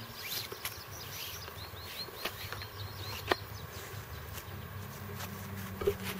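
Quiet woodland sound: a low steady insect buzz, with a quick run of short high bird chirps from about one and a half to three seconds in. A couple of faint sharp clicks come from the cord being handled at the tarp's webbing loop.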